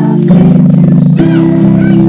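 Choir singing a Christmas carol, holding chords that change every half second or so.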